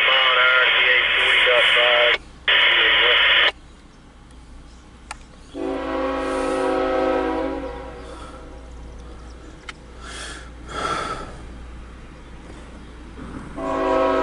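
Railroad scanner radio transmission, thin and band-limited, cutting off abruptly about three and a half seconds in. Then a freight locomotive's multi-note air horn sounds one long blast about five and a half seconds in, and a second blast begins near the end.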